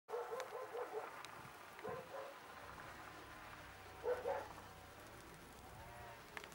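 A dog barking: a quick run of four short barks, then single barks about two seconds in and about four seconds in.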